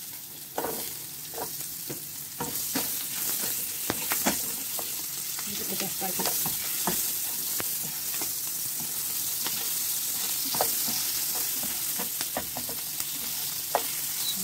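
Chopped onion and garlic sizzling in hot oil in a frying pan. The sizzle grows louder in the first second or two as the onion goes in, and a spatula scrapes and clicks against the pan many times as it is stirred.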